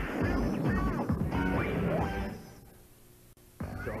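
Music and cartoon sound effects from a TV channel promo, with gliding pitches and a crash-like hit, fading out a little over two seconds in. After about a second of quiet, the next bumper begins with a voice just before the end.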